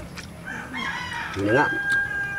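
A rooster crowing: one drawn-out call starting about half a second in.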